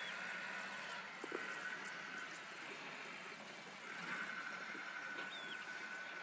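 Faint open-air grassland ambience: a steady high-pitched drone that drops out for about two seconds in the middle, with a couple of short, thin chirps.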